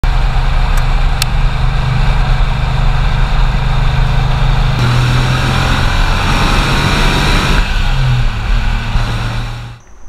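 Air-cooled flat-six of a 1995 Porsche 911 (993 generation) cabriolet cruising at highway speed: a steady engine drone mixed with road and wind noise. The sound shifts abruptly at cuts about five and seven and a half seconds in.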